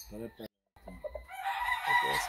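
A rooster crowing: one long call that starts past the middle and holds a steady pitch, still going at the end.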